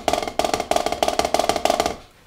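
Double-stroke roll on a rubber drum practice pad played with wooden drumsticks. Each stick bounces twice per hand motion, giving a rapid, even stream of taps measured out in sixteenth-note groups. The roll stops shortly before the end.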